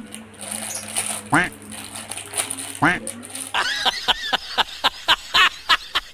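Edited-in sound effects: a short rising tone repeated about every second and a half over a faint steady hum, then from just past halfway a quick run of laughing, about five bursts a second.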